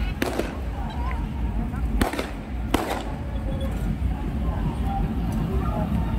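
Three sharp firecracker bangs at irregular intervals, the first just after the start and two close together about two seconds in, over crowd chatter.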